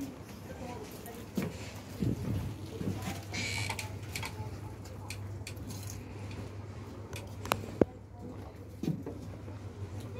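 Faint, scattered voices over a steady low hum, with a few light clicks.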